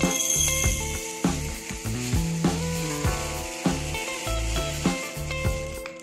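Tiny SMD resistors poured in a stream into a glass beaker, making a steady hissing rattle that thins out near the end, over background guitar music.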